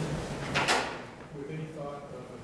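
A short, sharp clatter about half a second in, between quieter stretches of speech.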